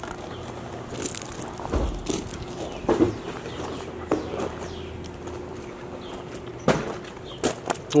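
A few sharp knocks and clicks as tools and boxes are handled in the back of a work van, over steady outdoor background noise with a faint hum.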